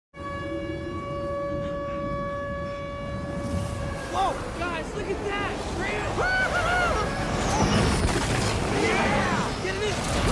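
Film soundtrack: a steady horn-like tone for about the first four seconds, then many overlapping voices calling out over a low rumble that slowly grows louder.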